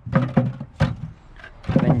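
Turnips being picked off a steel trailer floor and dropped into a plastic bucket, with a sharp knock about a second in, between bits of a man's speech.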